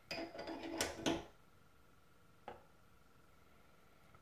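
Light metallic clicks and knocks from a steel connecting rod being handled against a bench vise and set onto a digital scale: a quick cluster in the first second, then one more single click about two and a half seconds in.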